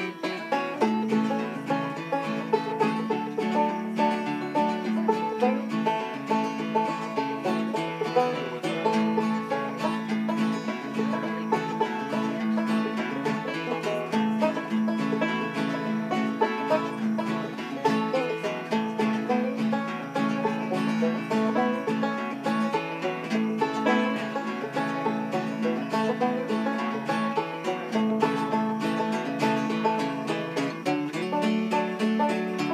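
Old-time tune played on banjo with acoustic guitar accompaniment, plucked notes running at a steady, unbroken rhythm.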